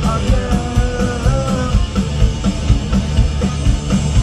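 Live pop-punk band playing at full volume: distorted electric guitars, bass and a fast steady drum beat, with a sung lead vocal over them, heard from the audience.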